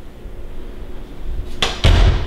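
An interior door being shut: a sharp knock about one and a half seconds in, then a heavier thud near the end.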